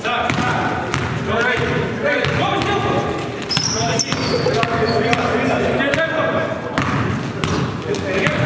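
Basketball bouncing on a hardwood gym floor in a large, echoing hall, amid players' voices and calls.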